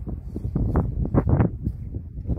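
Wind buffeting the microphone: a low rumble with irregular gusts that swell louder from about halfway.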